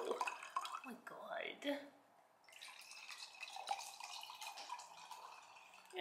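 White wine being poured from a glass bottle into a wine glass, liquid splashing and trickling into the glass, with a short break about two seconds in.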